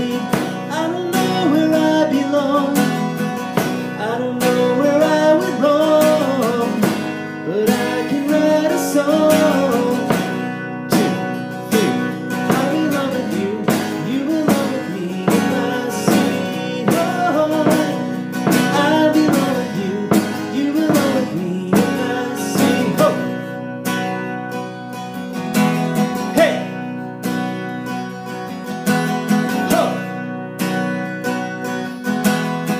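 Steel-string acoustic guitar strummed in a steady rhythm, with a man singing the melody over it through a PA microphone with reverb.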